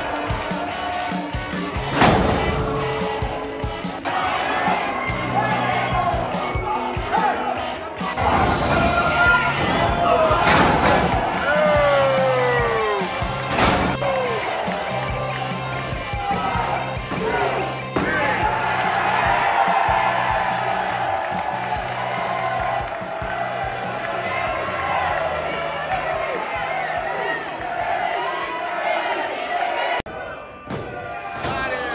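Background music with a repeating bass line over live wrestling match sound: a crowd cheering and shouting, with a few sharp slams of wrestlers hitting the ring canvas, the first about two seconds in.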